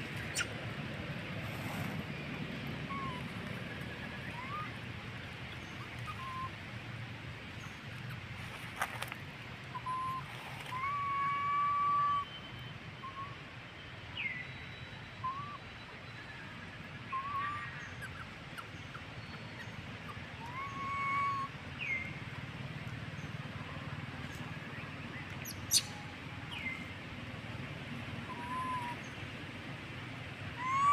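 Short, high chirping animal calls, some rising and some falling in pitch, scattered one every second or two over a steady outdoor background hiss, with a few held notes. A couple of sharp clicks stand out, the loudest about three-quarters of the way through.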